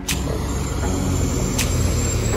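School bus engine running close by, a steady low rumble.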